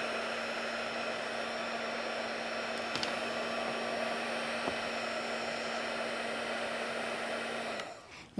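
Handheld embossing heat tool blowing hot air steadily with a constant motor hum, shrinking a piece of black shrink plastic; it switches off near the end.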